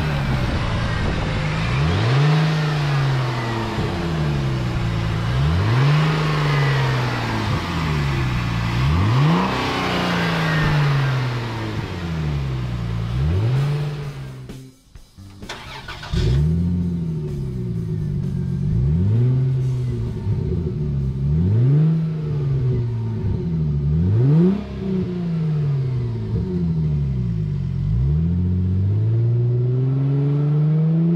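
2002 Chrysler Prowler's 3.5-litre aluminium V6 being revved over and over, about one rev every two seconds, each rising quickly and falling back. After a brief drop-out about halfway, the sound is heard from behind the car at its twin exhaust rather than close under the hood.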